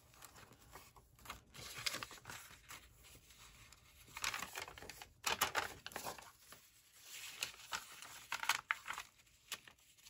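Paper rustling and crinkling as journal pages are turned and a thin pink sheet is lifted and laid into place: soft, irregular rustles with louder crinkles about halfway through and again near the end.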